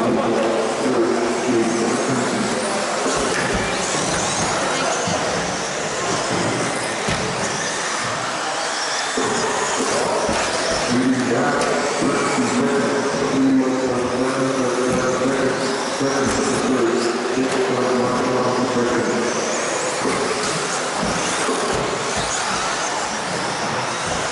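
2WD stock-class electric RC buggies racing, their motors giving high whines that rise and fall with the throttle.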